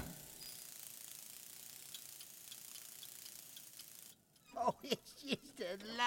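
A faint steady hiss with a few tiny ticks for about four seconds. About four and a half seconds in, a voice starts, making a few drawn-out vocal sounds.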